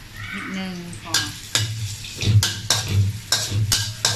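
Metal ladle scraping and knocking against an aluminium wok, about three strokes a second, as garlic, ginger and chilli are stir-fried in hot oil with a light sizzle.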